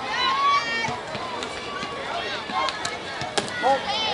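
High-pitched girls' voices calling out and cheering, with several sharp knocks scattered through, the loudest a little before the end.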